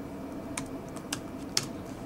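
Laptop keyboard typing: a few separate keystrokes, about one every half second.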